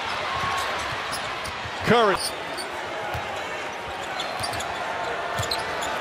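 Basketball being dribbled on a hardwood court, with short sharp knocks and squeaks over a steady arena crowd noise.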